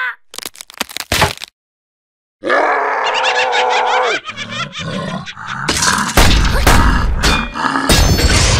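Cartoon vocal and sound effects: a few sharp clicks, a second of silence, then a cartoon creature's held grunt. Rapid clicks follow, and near the end loud, heavy rumbling crashes.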